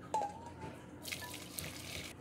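Warm chicken stock poured from a stainless steel saucepan through a fine-mesh strainer into a metal bowl: a light metal clink just after the start, then the hiss and splash of the liquid running through the mesh from about halfway in.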